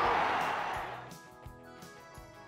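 Crowd noise from the match fades out over about the first second, giving way to quiet background music on plucked guitar.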